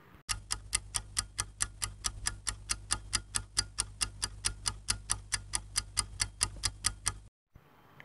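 Ticking-clock timer sound effect: even ticks, about four to five a second, over a steady low hum, timing the pause for the viewer's answer. It cuts off suddenly about seven seconds in.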